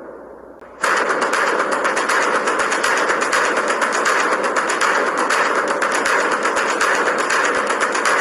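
A dense, unbroken rattle of rapid sharp cracks, like rapid fire, that starts abruptly about a second in over a fading sustained sound. It is part of the added soundtrack.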